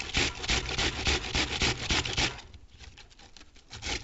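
Cabbage being grated on a flat metal hand grater: quick rasping strokes, about five a second, with a short pause past the halfway point before the strokes start again near the end.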